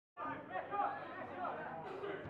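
Indistinct chatter of several people talking, starting abruptly out of dead silence just after the start.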